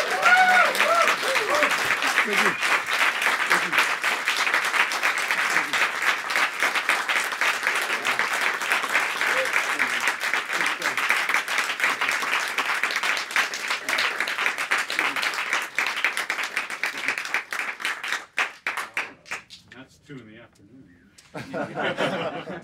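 Small audience applauding, with a few whoops and cheers at the start; the clapping goes on steadily, thins out about eighteen seconds in and stops, leaving a few voices.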